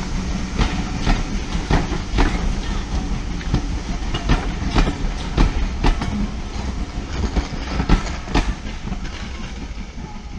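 Passenger coaches of a train rolling past close by: a steady rumble with irregular sharp clacks as the wheels cross rail joints. The sound eases near the end as the last coach goes by.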